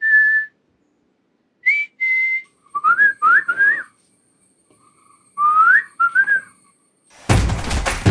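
A person whistling a tune in short phrases of upward-sliding notes, with pauses between the phrases. Near the end, loud music comes in.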